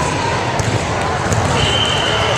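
Volleyball rally in a gymnasium: voices of players and spectators going on throughout, with the ball being struck during play.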